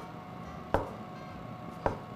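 Cleaver striking a wooden cutting board while slicing button mushrooms: two chops about a second apart.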